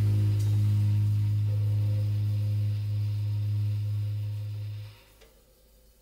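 Final held note of a jazz bass clarinet, double bass and drums group: one low steady pitch sustained for about five seconds over a fading cymbal wash, then it stops abruptly.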